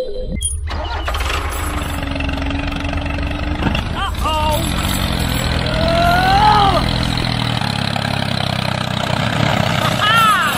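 Tractor engine running steadily with a low drone, shifting slightly near the end. A few short, gliding voice-like calls come over it midway and at the very end.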